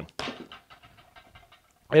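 A cordless hammer drill (Flex 24V) set down on a wooden stump: a short knock, then faint handling clicks and a faint steady hum.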